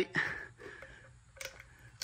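Compression tester hose adapter being hand-tightened into a spark plug hole: mostly quiet, with one faint sharp click about one and a half seconds in.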